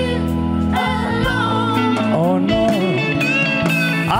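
Live rock band playing an instrumental passage: bass, drums and keyboards under a lead electric guitar that bends notes, its gliding line coming forward about halfway through.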